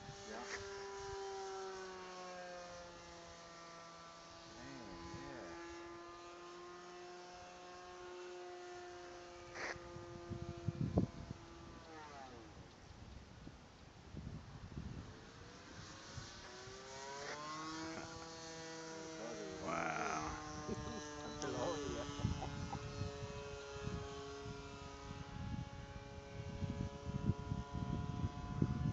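Electric motor and propeller of a radio-controlled model warbird in flight, a steady whine heard from the ground. Its pitch sinks slowly as the plane flies by and fades, then the whine returns about 17 s in, rising and then sinking again on the next pass.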